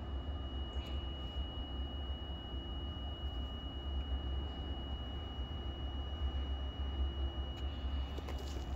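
Steady low rumble with a faint, thin, high-pitched tone held level over it; the tone stops shortly before the end.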